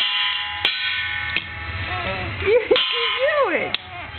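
An upturned perforated stainless-steel pot struck about five times with a wooden stick, used as a toy drum. Each hit leaves a long metallic ring; the first two hits are the loudest.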